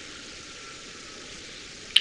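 Steady background hiss of a recording with no voice, and a single sharp click just before the end.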